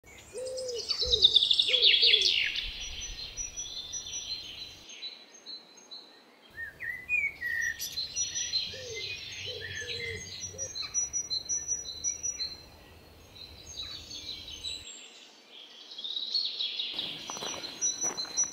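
Garden birds singing and chirping in several overlapping voices, with a lower call repeated in short groups underneath twice.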